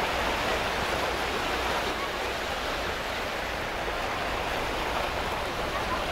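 Steady rushing wash of water, with car tyres sloshing through floodwater that covers the street.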